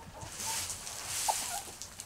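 Chickens in a straw-bedded pen: a soft rustling over the first second and a half, with a single short cluck a little over a second in.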